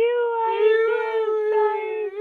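A man's voice in a long, drawn-out fake wail, held at one high pitch with a slight waver. It is a put-on crying act, called really bad acting.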